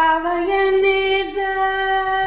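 A woman's voice singing long held notes over sustained organ-like keyboard chords, the sung note sliding up slightly near the start and then held.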